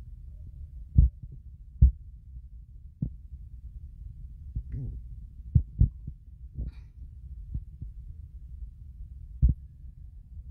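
Dull, low thumps of a phone being handled or touched near its microphone, about seven in all at irregular intervals, over a steady low rumble. The loudest two come about one and two seconds in.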